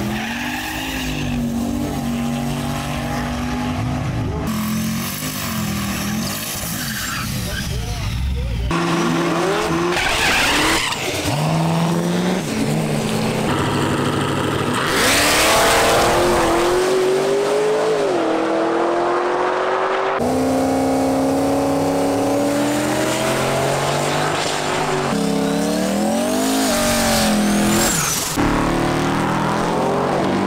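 A series of short clips of drag-racing street cars at the strip: engines revving and pulling away hard, pitch climbing and dipping, with tire squeal, each clip cut off abruptly by the next.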